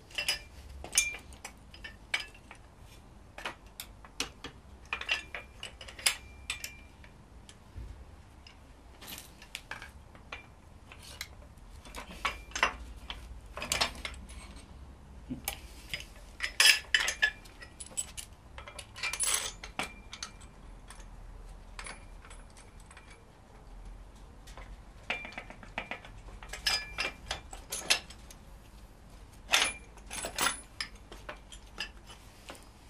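Irregular metallic clinks and clicks of steel bolts, nuts and hand tools being handled and fitted, scattered through the whole stretch with a few louder knocks.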